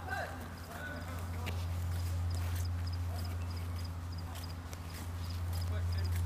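A steady low hum under faint distant voices, with a faint high double chirp repeating about three times a second.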